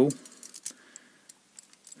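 Lever padlock keys on a ring clinking lightly a few times as they are turned in the fingers.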